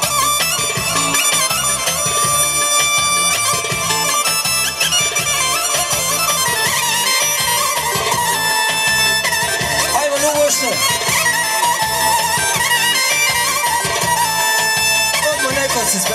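Folk dance music: a shrill reed wind instrument plays a held, droning melody over a steady, even drum beat.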